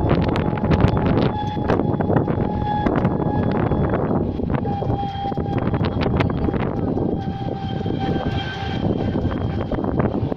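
An open-sided shuttle cart driving along, with wind rumbling over the microphone and a thin high whine from the cart that fades in and out several times. Scattered short knocks and bumps come through over the rumble.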